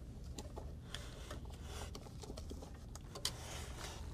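Faint handling sounds as label media backing is threaded and wound onto the rewinder of an OKI LE810 label printer: light paper rustle and soft clicks of the printer's parts, with a couple of sharper clicks about one second in and a little past three seconds, over a low steady hum.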